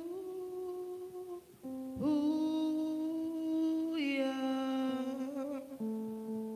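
Choir humming a slow melody in long held notes, each sustained for a second or two, with a short break about one and a half seconds in.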